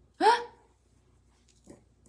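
A woman's short startled yelp, rising in pitch, as the lights suddenly go out around her.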